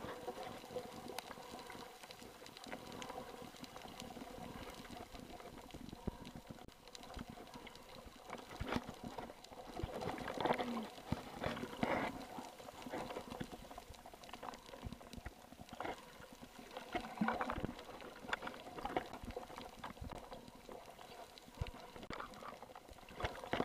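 Muffled underwater sound picked up by a camera below the surface: water movement and bubbling with scattered clicks over a faint steady hum. Louder bursts come about ten to twelve seconds in and again around seventeen seconds.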